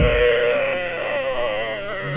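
A single long held tone whose pitch wavers slightly, growing a little quieter toward the end.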